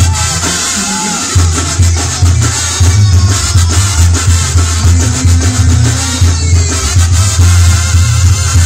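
Sinaloan-style brass banda playing live: trumpets and trombones over a pumping sousaphone bass line, with drums and percussion. The bass line drops out briefly near the start and comes back about a second and a half in.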